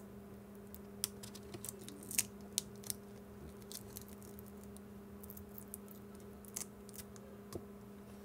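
Faint, irregular small clicks and scratches of fingertips and nails working at a thin layered plastic keypad membrane, peeling it back to free a metal dome switch, over a steady low hum.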